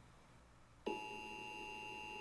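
About a second in, the Emergency Alert System attention signal starts on a television: a steady two-pitch electronic tone. Before it there is only faint room tone.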